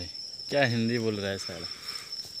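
Insects, most likely crickets, trilling steadily in one continuous high tone, with a man's voice speaking briefly in the first half.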